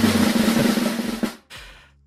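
Drum roll sound effect played back, a fast snare roll with a low steady drum underneath, cutting off suddenly about a second and a half in.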